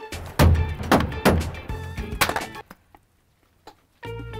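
A handheld steam iron being smashed against a metal wall layer: several heavy thunks in the first two and a half seconds over background music, then a gap of near silence about a second long near the end.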